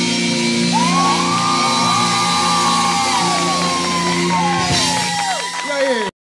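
A live band plays with electric bass and a drum kit, holding long notes. Shouting, whooping voices glide up and down over the music.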